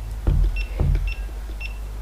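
GoPro Hero 5 camera beeping three short, high beeps about half a second apart as its buttons are pressed, with a couple of dull knocks from handling the camera in its plastic dome-port housing.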